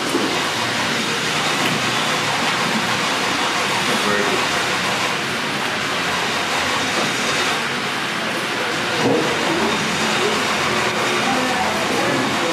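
Steady rushing background noise with faint voices now and then.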